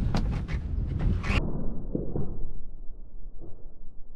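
A few knocks as a netted crab pot is handled over a boat's side, with wind rushing on the microphone; about a second and a half in the sound turns dull, leaving a low rumble of wind and water.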